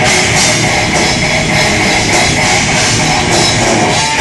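Blackened death metal band playing live: distorted electric guitars and a drum kit in a loud, dense, unbroken wall of sound.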